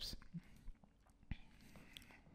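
Near silence: faint room tone with a few soft clicks, the sharpest about a second and a quarter in.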